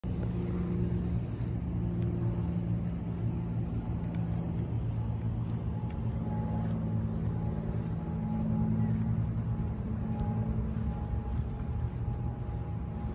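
The 6.8-litre V10 petrol engine of a 1999 Ford F-350 Super Duty idling steadily, a low even hum with no revving.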